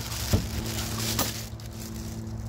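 Clear plastic bag crinkling and rustling as it is handled, with a sharp knock about a third of a second in and a smaller one just past the middle. A steady low hum runs underneath.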